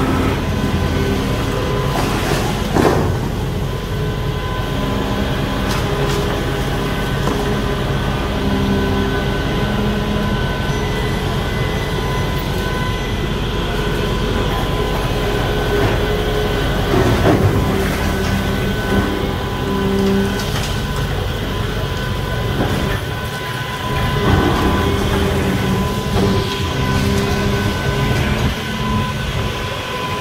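Volvo long-reach demolition excavator running with a steady engine drone and high steady tones, and a few sharp knocks and crashes as concrete is broken off a building being demolished.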